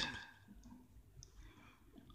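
An almost silent pause between recited phrases, with two faint high clicks, one about half a second in and one just over a second in.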